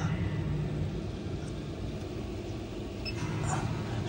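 Newly installed Maxxfan Deluxe 5100K roof vent fan running: a steady rush of moving air over a low, even hum from its motor and blades.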